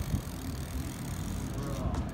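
Fat-tyre bike rolling over paving slabs, a low steady rumble of the tyres with no knocks or impacts.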